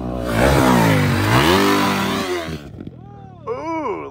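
Dirt bike engine revving hard close by, its pitch rising and falling, then dropping away about two and a half seconds in.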